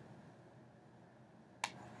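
Near silence with room tone, then a sharp click near the end: a stylus tapping a drawing tablet while handwriting.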